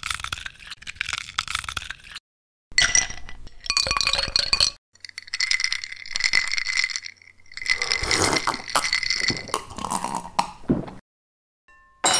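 Ice cubes rattling and clinking against a drinking glass, in four separate bursts of a few seconds each, the glass ringing with each knock.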